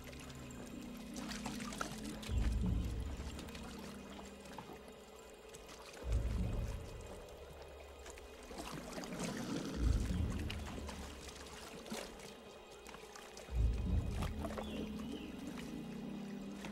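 Tense film score with a deep low pulse swelling about every four seconds, over water splashing and lapping around inflatable rafts being paddled.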